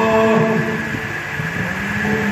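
A man's voice singing into a microphone over a hall's sound system, holding long, steady notes, the second a little lower than the first.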